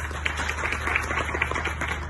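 Audience applause: many hands clapping in a short round.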